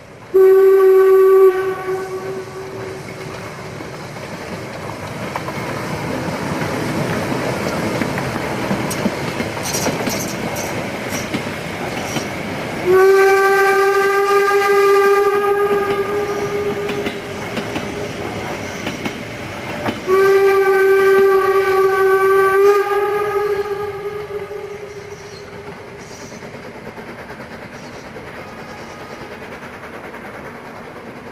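Harz narrow-gauge steam locomotive sounding its whistle: a short blast right at the start, then two longer blasts about 13 and 20 seconds in, the last stepping up slightly in pitch near its end. Between the blasts the running noise of the passing train swells, then drops away after about 25 seconds as it draws off.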